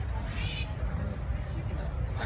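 A piglet's short, high-pitched squeal about a third of a second in, over a steady low rumble.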